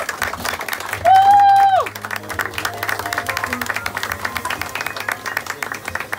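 Audience applauding with dense hand clapping after a jazz number. About a second in, one loud held vocal cry rises over the clapping for under a second, then drops away.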